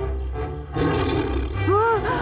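A tiger's roar, as a cartoon sound effect, begins about a second in over background music. Near the end comes a short exclamation whose pitch rises and then falls.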